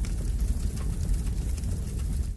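Transition sound effect: a steady rumbling hiss with a heavy low end, no voice and no tune.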